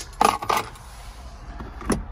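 A set of vehicle keys with remote fobs jangling and clinking for about half a second near the start. A single sharp click comes near the end.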